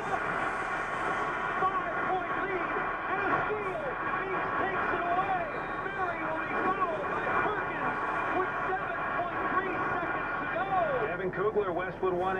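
AM news radio playing in a vehicle cab: a sportscaster's play-by-play of a basketball game's final seconds over a dense background din, with the thin, muffled sound of AM radio.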